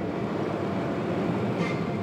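SBB Re 460 electric locomotive and its intercity coaches rolling past along the platform, a steady rumble of wheels and running gear.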